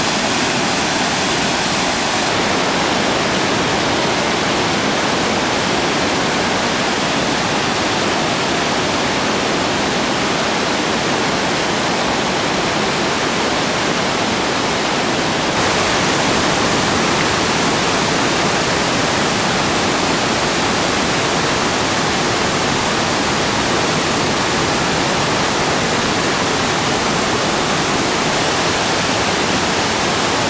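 Waterfall: water rushing and splashing over rocks in a loud, steady roar. The rush shifts slightly in tone about 2 seconds in and again about halfway through, where the shots change.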